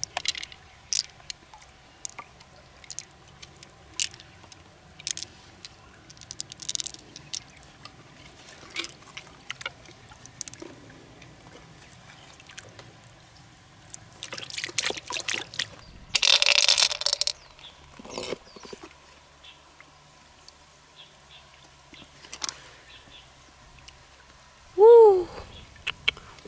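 Shallow river water splashing and dripping in many small scattered splashes, with one louder splash or pour lasting about a second, sixteen seconds in. A brief pitched vocal sound comes near the end.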